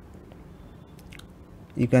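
A few faint, short clicks over low background hiss, then a man starts speaking near the end.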